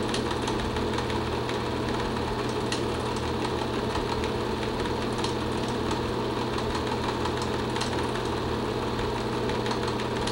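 Film projector running steadily: a continuous mechanical whir and hum, with a few faint ticks.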